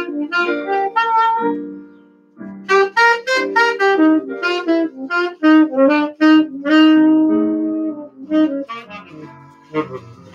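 Jazz saxophone playing a melodic phrase of separate notes over piano chords. The saxophone breaks off for a moment about two seconds in, then resumes with a run of notes and a longer held note near the middle.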